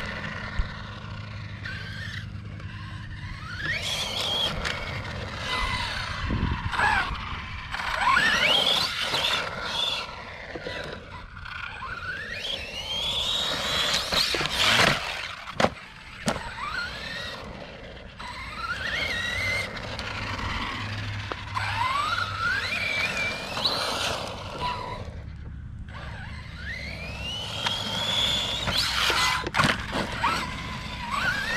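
Losi Baja Rey RC trophy truck's electric motor and drivetrain whining, the pitch sweeping up and down again and again as the throttle is worked, over the noise of the tyres on dirt. A sharp knock comes about halfway through.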